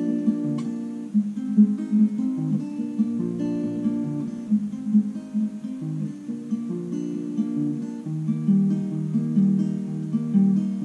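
Steel-string acoustic guitar with a capo, fingerpicked in a steady arpeggio pattern, the plucked notes ringing over one another without a break.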